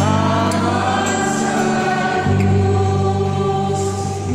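A group of voices singing a slow hymn together over instrumental accompaniment of held low chords, which change about two seconds in.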